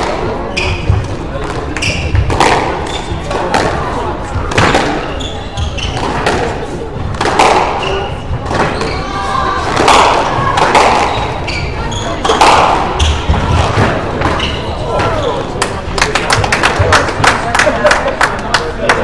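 Squash rally: the ball cracking off rackets and smacking against the court walls, with shoes squeaking on the wooden floor, all echoing in a large hall over background voices. Near the end, a quick run of sharp taps.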